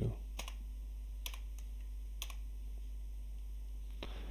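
A few isolated computer keyboard key presses, about four sharp clicks in the first two and a half seconds. A steady low hum runs underneath.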